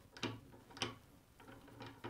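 A metal camera bracket being dropped into its mount on an articulated arm and locked in: a few faint clicks and small knocks, the clearest just under a second in.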